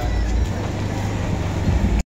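Loud outdoor street noise dominated by a low rumble.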